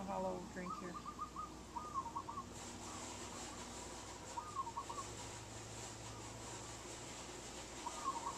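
A bird calling faintly in the background: short trilled calls, about four at irregular intervals, over a low steady hum.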